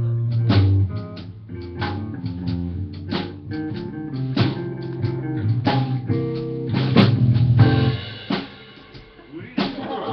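Live blues band playing: two electric guitars, electric bass and drum kit keeping a steady beat. The bass and drums drop away about eight seconds in, leaving a quieter stretch before a guitar comes back in near the end.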